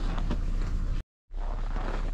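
Steady outdoor background noise with a low rumble, likely wind on the microphone, that cuts out to silence for a moment about a second in and then comes back.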